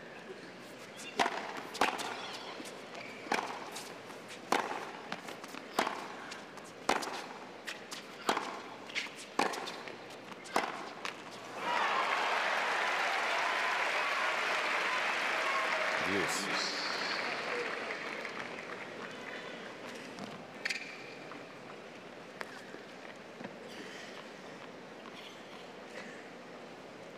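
Tennis rally on a hard court: about nine racket strikes on the ball, roughly one a second. Then stadium crowd applause and cheering break out suddenly, hold for several seconds and fade away.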